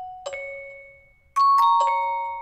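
Music-box preset of the Purity software synth playing a slow melody: bell-like notes that ring and fade, one shortly after the start, then three quick notes about a second and a half in.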